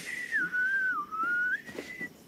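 Someone whistling one long, wavering note: it starts high, slides down, dips lowest about halfway through, then rises back to its starting pitch.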